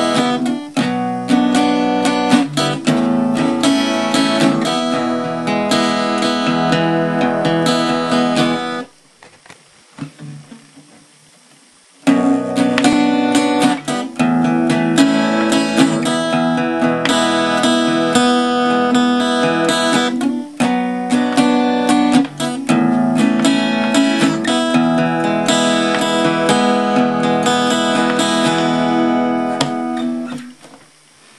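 Acoustic guitar strummed through a three-chord progression of B minor, A and E major. It stops for about three seconds about nine seconds in, then starts again.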